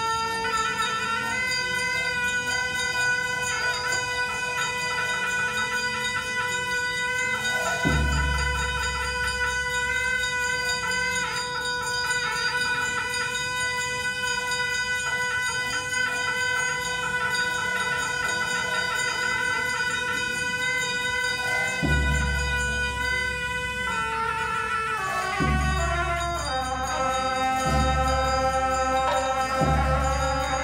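Tibetan Buddhist ritual music: long, steady instrumental tones held for many seconds, with low booms about eight seconds in and several more from about twenty-two seconds. In the last few seconds the tones step through changing notes.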